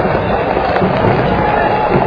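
Steady noisy stadium ambience in heavy rain: the hiss and patter of rain mixed with a distant crowd, with no single sound standing out.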